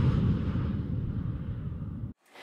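The low rumbling tail of a deep boom sound effect, fading steadily.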